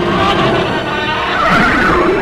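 A kaiju roar sound effect: a loud, wavering, screeching cry whose pitch bends up and down, growing loudest near the end.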